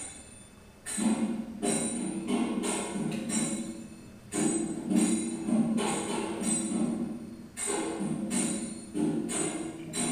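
Drumming with jingling bells from a dance video played back over the room's loudspeakers. It is a repeating two-stroke drum pattern (de-tita) in a 2+3 pulse grouping, starting about a second in with strokes about every two-thirds of a second.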